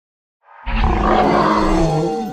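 A loud creature roar sound effect. It starts suddenly about half a second in, holds, and falls in pitch as it dies away near the end.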